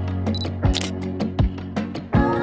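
Background music with a steady beat, overlaid with a camera sound effect: a short high autofocus-style beep followed by a shutter click less than a second in.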